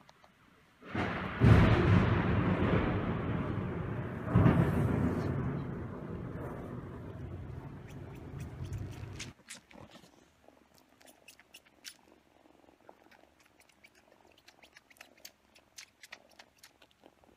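Thunder: a loud clap about a second in, a second crack about three seconds later, and a long rumble slowly dying away until it cuts off suddenly. Then faint quick clicks of a kitten suckling.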